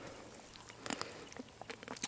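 Faint small splashes and ticks of a hand feeling around in shallow water between rocks, with a few sharper clicks about a second in and near the end.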